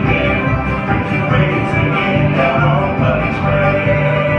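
Live bluegrass band playing: an upright bass sounding steady, regularly repeating low notes under a picked acoustic string instrument.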